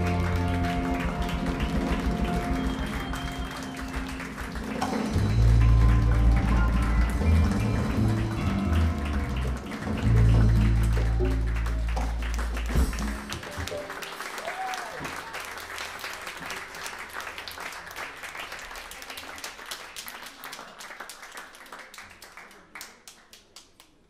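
Live band with piano and congas playing the closing bars of a Cuban number over long, held low notes. The music stops about halfway through, and audience applause follows, dying away over about ten seconds.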